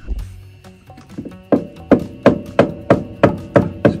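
A tool knocking repeatedly on a freshly glued Corian frame to work it loose: sharp knocks about three a second, each ringing briefly, starting about one and a half seconds in.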